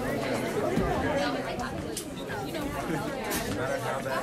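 Several people chatting at once, the overlapping voices of students talking among themselves in a classroom after a lecture, with a couple of short knocks.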